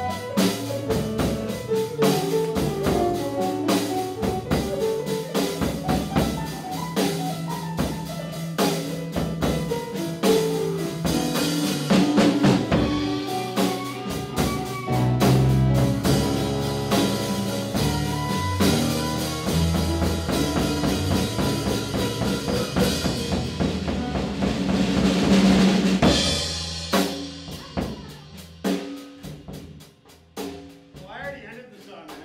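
Live blues band playing: electric guitar, drum kit, bass and keyboard. The music builds to a loud, cymbal-heavy peak and then drops away near the end, leaving a few scattered drum hits as the song finishes.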